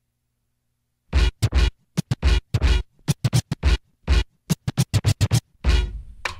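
DJ turntable scratching: a rapid run of short, chopped scratch strokes starting about a second in.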